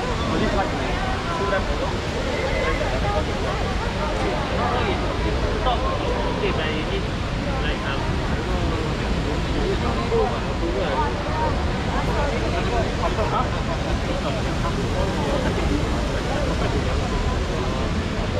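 Busy street ambience: indistinct voices of people talking nearby over a steady low rumble of city traffic.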